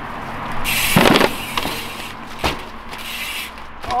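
Dirt jump bike hitting a kicker ramp into a wall ride and coming down: a loud thump about a second in, a second sharp knock about a second and a half later, with a rushing noise of riding between them.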